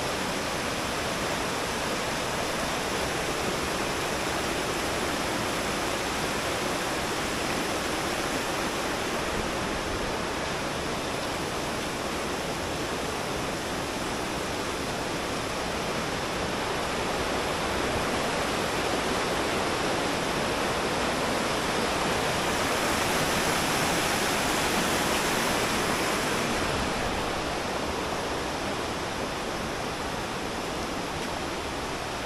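Shallow rocky river rushing over boulders in a steady wash of water noise. It grows a little louder past the middle, then eases near the end.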